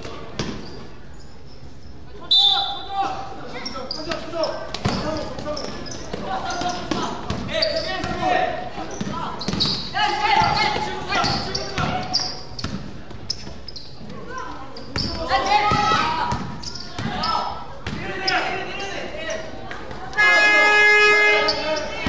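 Basketball game in a gymnasium: the ball bouncing on the court amid players' shouts and calls. Near the end, a loud electronic game buzzer sounds for about a second and a half.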